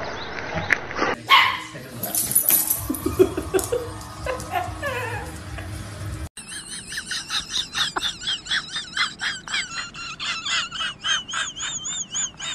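Dogs vocalising: barks and yips at first, then from about six seconds in a husky giving a rapid run of short, wavering, high-pitched calls, about three a second.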